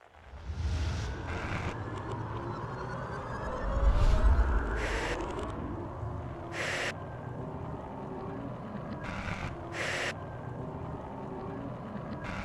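Sound-designed logo sting: a string of whooshes and gliding tones over a low rumble, with a deep boom about four seconds in, the loudest point.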